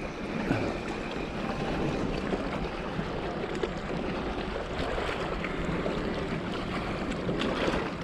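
Steady wind noise with small waves lapping, an even rushing hiss with no distinct events.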